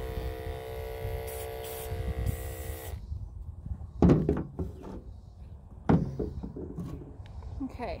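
Electric horse clippers running with a steady hum while trimming a draft horse's leg hair, cutting off suddenly about three seconds in. Two loud knocks follow, about two seconds apart.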